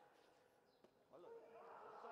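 Near silence, then faint voices from about a second in.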